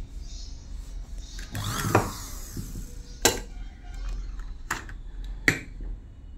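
Plastic cover of an Usha sewing-machine foot-pedal regulator being handled and fitted onto its metal base: a short scrape ending in a knock about two seconds in, then three sharp clicks.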